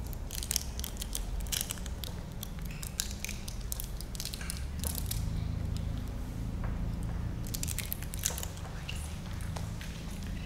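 Communion bread being handled and eaten: scattered, irregular crackling clicks over a low steady hum.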